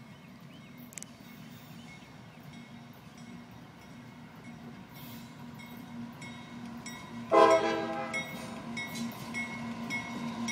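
Approaching CSX diesel freight locomotive, its low engine rumble growing steadily louder. About seven seconds in it sounds one loud chord on its air horn, which fades over the next second or so.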